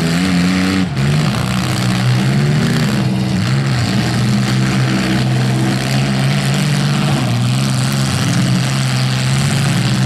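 Several demolition derby cars' engines running and revving at once, their pitches rising and falling against each other. A brief drop in the sound comes about a second in.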